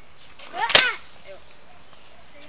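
A sharp clack as a wheeled child's backpack topples over onto a stone step, about three-quarters of a second in, over a brief exclaiming voice.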